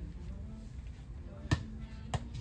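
A small toy soccer ball hits a hard floor once, a sharp bounce about one and a half seconds in, over a low steady background hum.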